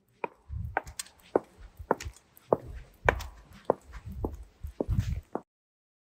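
Slow, even footsteps on a stone floor, about two a second, each a sharp click with a low thud, stopping suddenly near the end.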